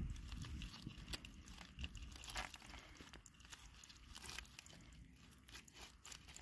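Faint scattered crackles and small clicks as a metal lobster hook probes among wet kelp in a rock crevice, a little louder at the start and fading toward the end.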